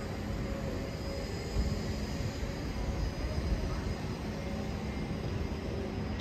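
Steady background rumble of a large exhibition hall, with a few faint steady hum tones.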